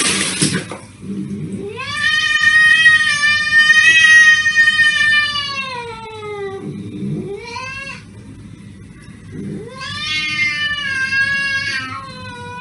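Cat yowling: a long, wavering yowl that rises and then falls over about five seconds, a short rising cry about eight seconds in, and another long yowl near the end. A brief burst of hiss comes at the very start.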